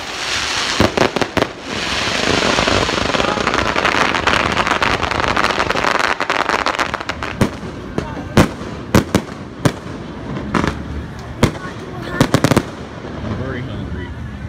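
Water from a splash fountain spraying and hissing close to the microphone. About halfway through, the spray gives way to a string of sharp, irregular cracks and pops that stop shortly before the end.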